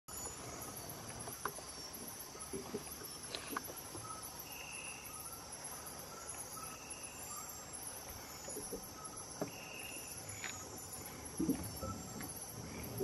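Steady high-pitched chorus of night insects, with a few short, higher notes repeating every couple of seconds and scattered faint clicks.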